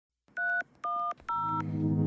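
Three telephone keypad (DTMF) tones dialing 3-1-0, each about a quarter second long with short gaps between them. Music begins under the third tone and swells near the end.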